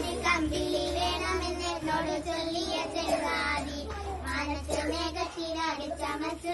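Three young girls singing together.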